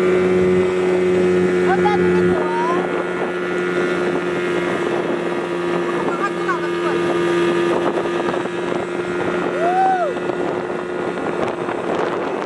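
Speedboat engine running steadily while the boat is under way, a constant hum over the rush of water and wind.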